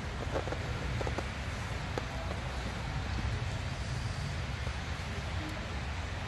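A steady low rumble of background noise, with a few faint clicks in the first couple of seconds from hands handling the brush holder and brush springs of a Volkswagen generator.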